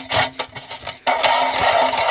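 Metal rubbing and scraping as the parts of a one-and-a-half-inch knockout punch are fitted through a hole in an aluminium chassis and screwed together by hand: short scrapes, then a longer continuous rasp from about a second in.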